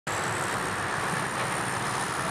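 Steady engine rumble and hiss of heavy earthmoving machinery running, with a low, even drone.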